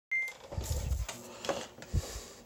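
A short high beep, then handheld-camera handling noise: rubbing and rumble with two sharp clicks near the end.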